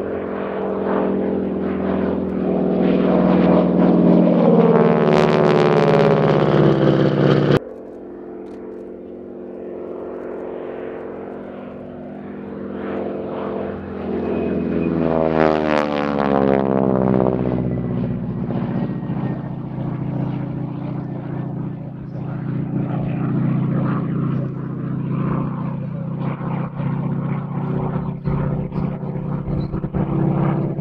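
North American Harvard trainer's radial engine and propeller at full power during display passes. It sweeps past twice, its pitch falling each time, about five and fifteen seconds in. The sound breaks off abruptly about seven and a half seconds in and then goes on as a steady drone.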